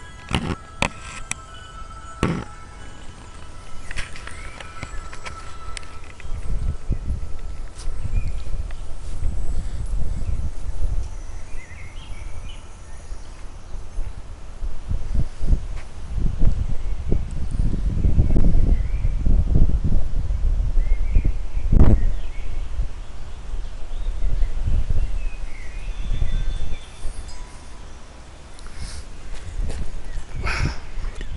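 Wind buffeting the microphone in an uneven low rumble, heaviest in the middle stretch, with a few knocks from handling the camera near the start. Faint bird chirps come through now and then.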